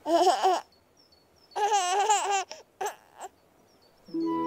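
A baby giggling and babbling in two short bursts about a second and a half apart, followed by a couple of brief little sounds.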